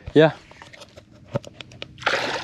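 A short spoken "yeah", then mostly quiet with a few faint, scattered clicks and ticks, the strongest just past the middle.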